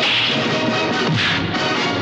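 Dramatic orchestral film score with brass, overlaid by two sharp fight-scene punch sound effects: one right at the start and one a little past a second in.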